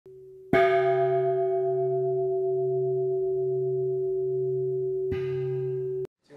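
A bell struck about half a second in and again more softly near the end, each strike ringing on in a long, sustained tone over a steady low hum. The sound cuts off abruptly at the end.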